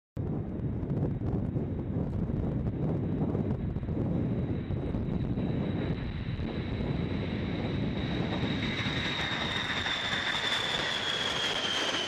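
Boeing B-52 Stratofortress's eight Pratt & Whitney TF33 turbofan engines at takeoff power as the bomber lifts off and climbs past. A steady low rumble carries a high whine that grows louder in the second half and falls slightly in pitch near the end.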